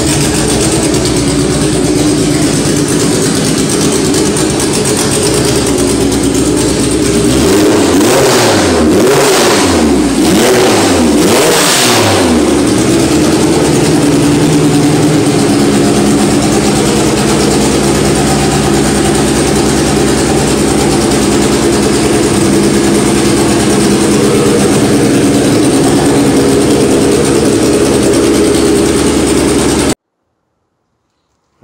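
Honda H-series four-cylinder engine in an H2B-swapped Civic idling steadily, then revved sharply several times about eight to twelve seconds in before settling back to idle.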